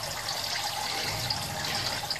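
Water from a Turtle Clean 511 canister filter's spray-bar return splashing steadily into a turtle tank.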